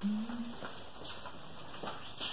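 A brief low hum at the start, then faint scattered footsteps and scuffs on a concrete garage floor.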